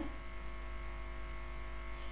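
Steady electrical hum made of several faint, unchanging tones over a low drone.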